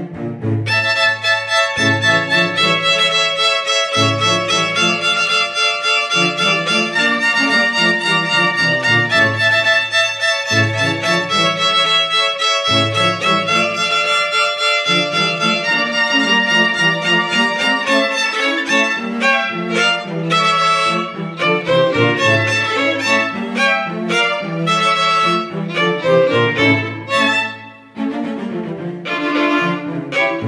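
Three violins and a cello playing a Tierra Caliente pasodoble, the violins carrying the melody in harmony over a low cello bass note that returns about every two seconds. The music drops away briefly near the end before picking up again.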